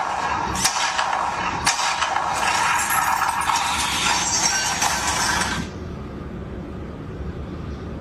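Robosen walking robot toy's servo motors whirring, with rapid clicking and clattering of its plastic joints and feet as it steps forward. The noise stops abruptly about two-thirds of the way through, leaving only a much quieter steady background.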